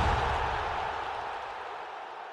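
Fading tail of a graphic-transition sound effect, a deep boom with a swoosh: a noisy wash that dies away steadily.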